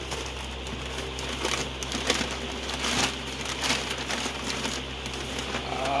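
White tissue packing paper crumpling and rustling in irregular crackles as it is pulled by hand out of a cardboard box.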